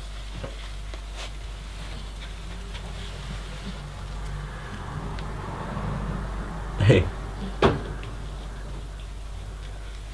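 Quiet room tone with a steady low hum and some faint rustling. About seven seconds in, a man's voice calls the dog twice with short words ("Komm").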